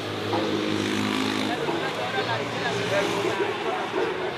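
Street traffic: a motor vehicle's engine running by, loudest in the first second and a half, with people talking in the background.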